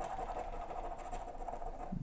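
A coin scraping the latex coating off a lottery scratch-off ticket in short, light, irregular strokes.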